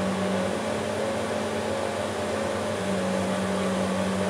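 Steady machine hum, like a running fan, with a constant low tone and a fainter higher one.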